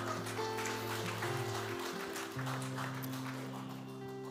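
Soft live worship-band music: sustained held chords that change about two seconds in, with light acoustic guitar.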